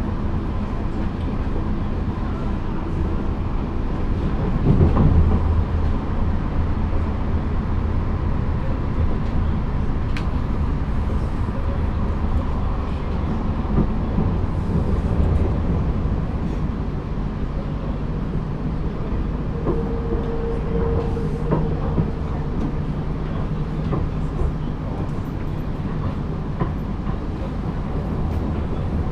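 Running noise inside a Wiener Lokalbahnen light-rail car under way: a steady low rumble from the wheels and running gear, swelling louder for a second or two about five seconds in. A faint steady tone lies under the rumble, and a brief higher tone comes about twenty seconds in.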